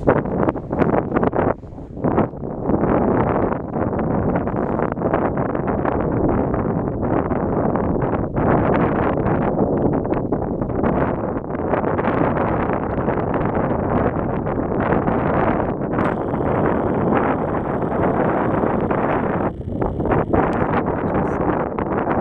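Wind buffeting the microphone on an open chairlift ride: a loud, steady rush with rapid uneven gusty thumps.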